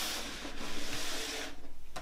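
Paper and card album inserts sliding and rubbing across a wooden tabletop as they are swept up, the scraping stopping about one and a half seconds in, followed by a faint tap.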